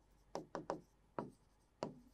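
Chalk writing on a blackboard: about five short, faint scratches as the letters are formed.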